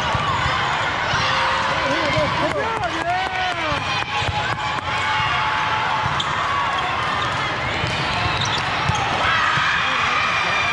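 Indoor volleyball rally in a large hall: sneakers squeak on the sport-court floor, the ball is struck a few times around the middle, and players and nearby courts call out in a constant murmur of voices.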